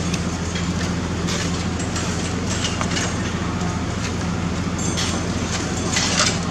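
A steady low hum and rumble that holds level throughout, with faint voices underneath.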